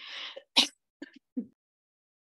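A woman coughing and clearing her throat into her fist: a breathy hack, a sharper cough about half a second in, then two short catches around a second in.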